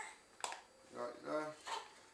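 Paper bag of self-raising flour crinkling as it is tipped and flour pours into a plastic bowl, with one sharp crackle about half a second in.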